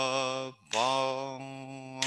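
A man chanting Byzantine chant, holding long, nearly steady notes on drawn-out vowels. There is a brief break for a new note about half a second in.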